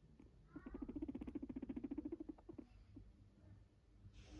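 Guinea pig purring while stroked under the chin: a rapid low pulsing, about fourteen pulses a second, that starts about half a second in with a short rising squeak and lasts nearly two seconds. A low purr like this during petting is the sign of a relaxed, contented guinea pig.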